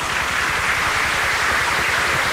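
A steady hiss of noise like static, strongest in the upper-middle range, with no speech.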